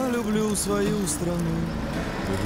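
A man singing a pop-style theme song in Russian, with short held and gliding notes, over an instrumental backing.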